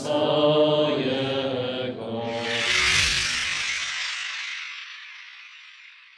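Voices singing a liturgical chant, which stops about two seconds in. A rushing noise then swells and fades away.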